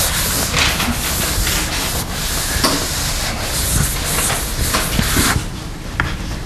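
Chalkboard eraser rubbed hard across a blackboard in repeated back-and-forth strokes, a rough scrubbing noise that stops shortly before the end.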